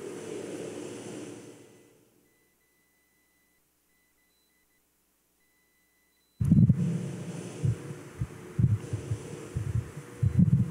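Low room hum fades away into a few seconds of dead silence, as though the audio has been muted. About six seconds in the sound cuts back in suddenly, with soft, irregular low thumps and bumps from someone moving close to a microphone.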